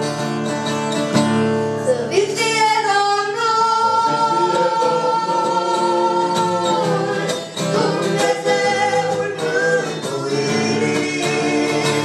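Mixed voices of a small family vocal group singing a Christian worship song in Romanian in harmony, with held notes, to a strummed acoustic guitar.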